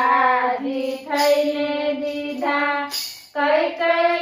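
Three women singing a Gujarati devotional bhajan together in unison, unaccompanied, on long held notes, with short breaks in the singing about a second in and again just past three seconds.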